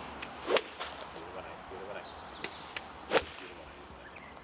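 Golf iron shots off driving-range mats: two loud swings, each a short whoosh ending in a sharp crack at impact, about half a second in and again near the end. Fainter ball strikes from neighbouring bays click in between.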